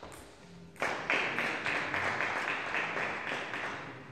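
Small group of spectators applauding: clapping breaks out suddenly about a second in and slowly dies away, the reaction to a point just won.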